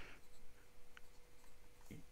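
Sailor King of Pen fountain pen's broad 21-karat gold nib writing on paper: faint scratching that swells and fades with each stroke of the letters.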